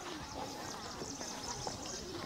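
Faint outdoor background of scattered animal calls and distant voices.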